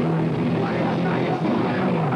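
A live rock band playing: distorted electric guitars, bass and drums, with a held low note early on before the playing turns busier.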